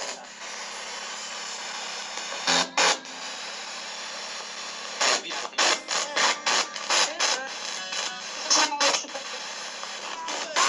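Ghost-hunting spirit box sweeping through radio frequencies: a steady static hiss broken by short choppy bursts of sound, a couple about two and a half seconds in and a quick run of them from about five to nine seconds.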